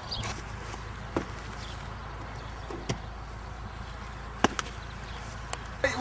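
Burning manuka wood on a hangi fire popping now and then, with about five sharp snaps over a steady low rumble.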